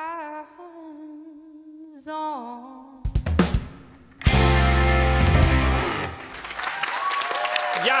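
A female voice holds the last sung notes of a rock song over quiet guitar. About three seconds in, the band hits a loud final chord that rings out, and applause starts up near the end.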